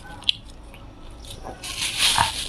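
Close-miked eating sounds: a sharp mouth click early on, then from about one and a half seconds in a loud, continuous crinkling rustle of disposable plastic gloves as the hands pull apart stewed pork trotter.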